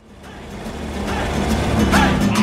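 Background music fading in: a rising swell that grows louder and leads into a rock track with guitar and drums.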